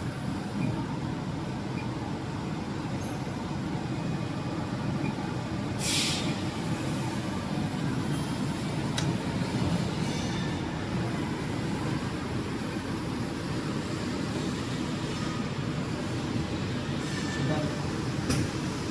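Steady low hum of industrial machinery, with a short sharp hiss of air about six seconds in and a single click around nine seconds.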